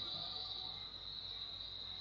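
Background noise with no speech: a steady high-pitched drone, like a cricket chorus or electrical whine, over a faint low hum.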